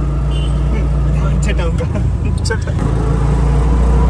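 Auto-rickshaw engine running with a steady low drone while the vehicle drives along, heard from inside the open passenger cabin. A few short clicks and knocks come from the cabin about a second and a half to two and a half seconds in.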